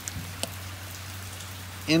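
Steady hiss of rain falling during a storm, with one faint click shortly after the start.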